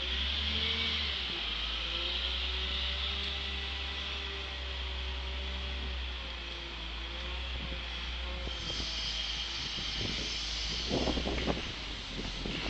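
Wheel loader's diesel engine running, its pitch rising and falling as it drives up and lifts its bucket, with a steady hiss over it. Near the end, a rattle of irregular knocks as material starts to drop into the dump truck's steel bed.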